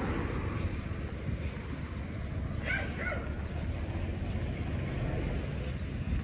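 Steady low rumble of outdoor street noise from a residential road with a car on it, with two brief high calls close together about three seconds in.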